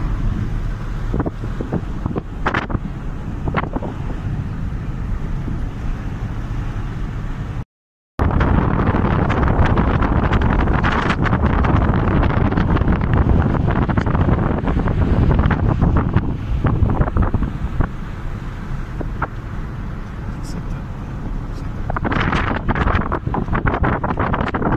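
Strong wind buffeting the microphone: a loud rumble with repeated gusts. It cuts out for a moment at about eight seconds, then carries on just as loud.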